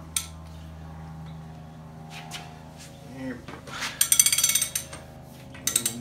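3/4-inch-drive ratchet wrench clicking rapidly as its handle is swung back, in a run lasting just under a second from about four seconds in and a shorter one near the end, between pulls that tighten the Dana 60 pinion nut. A single sharp metal click comes at the very start.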